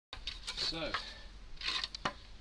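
Wooden workbench tops being handled on paving slabs: brief scrapes of wood on stone, then a few light knocks near the end.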